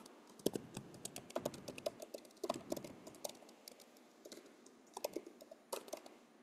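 Typing on a computer keyboard: a run of quick, irregular keystrokes, with a short pause a little past the middle.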